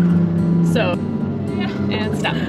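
Toyota Tacoma pickup's engine running under throttle as its tyres spin and dig into soft sand, mixed with background music.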